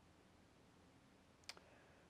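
Near silence: faint room tone in a small room, with a single short, sharp click about one and a half seconds in.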